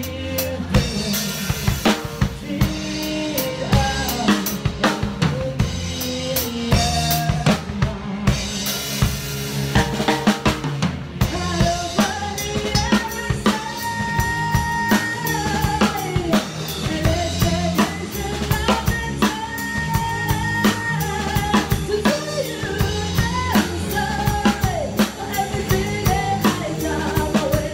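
A drum kit played with sticks in a live band: a steady beat of kick drum and snare with cymbal hits, over the band's other parts. From about halfway a sustained melody line joins in.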